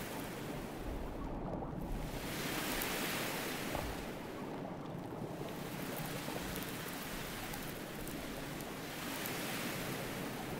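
Underwater water noise, a soft rushing whoosh that swells and fades about three times in slow surges.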